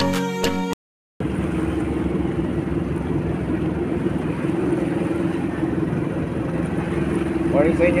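Mallet-percussion music for under a second, then after a cut the steady drone of a motorized outrigger boat's engine, heard from on board. A voice starts near the end.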